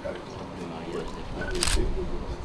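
A single camera shutter click about one and a half seconds in, just after a short beep, over a low murmur of voices.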